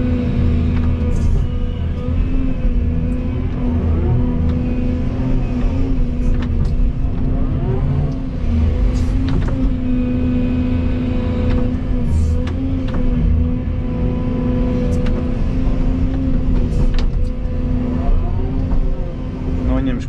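Volvo EC220E excavator's diesel engine running steadily, heard from inside the cab, its hum wavering slightly under hydraulic load as the bucket strips topsoil. Scattered short clicks and knocks come through over the engine.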